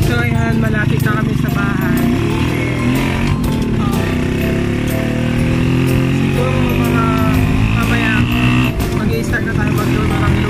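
Small motorcycle engine running steadily under way, a constant low drone heard from the passenger seat, with wind buffeting the microphone.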